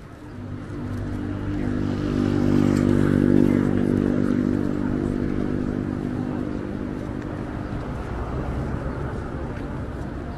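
A motor vehicle's engine passing on the street, growing louder to a peak about three seconds in and then slowly fading away.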